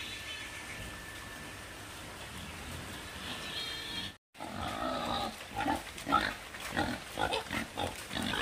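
Pigs grunting in short, irregular bursts through the second half, after a brief cut in the sound. Before that there is only a steady faint background hiss.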